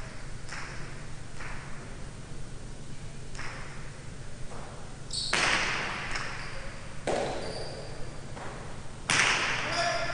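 Jai alai ball play in a large echoing fronton: a few faint knocks early on, then from about five seconds in three loud cracks about two seconds apart as the hard ball is served and returned off the court walls, each ringing on in the hall.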